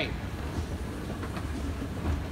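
Escalator running: a steady low rumble from the moving steps and drive.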